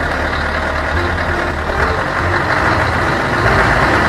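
A steady engine sound like a heavy vehicle idling: a low rumble under a dense, gritty noise, growing slightly louder toward the end.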